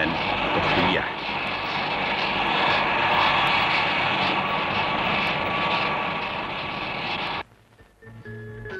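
Jet airliner's engines running as it taxis: a loud, steady rush with a whining tone, cutting off abruptly near the end.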